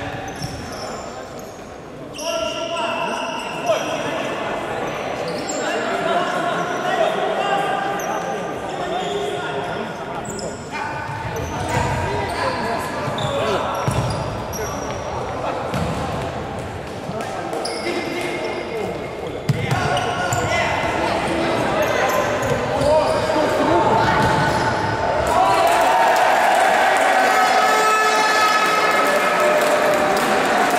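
Futsal being played in a sports hall: a ball being kicked and bouncing on the hard court, and players calling and shouting, all echoing in the large hall. The voices grow louder and busier about 25 seconds in.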